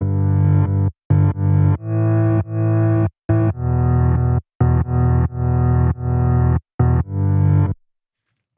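Reversed piano chords chopped into a dozen or so short pieces, each swelling up and then cutting off abruptly, with brief silent gaps between some of them.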